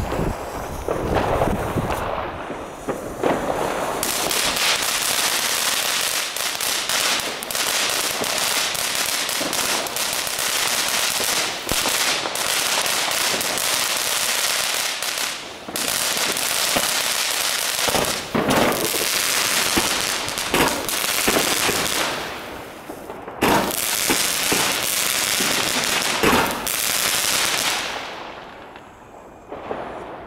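Comet 'Breakdown' ground firework going off: a dense, continuous run of crackling that starts about four seconds in while it sprays sparks, with a handful of louder cracks scattered through, then dies away near the end.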